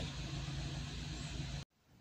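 Nissan HR15 1.5-litre four-cylinder engine idling steadily in park, heard from inside the cabin; it cuts off abruptly near the end.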